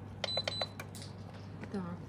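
UV/LED nail lamp giving a short, high electronic beep, with a few clicks, as its button is pressed to start the curing cycle.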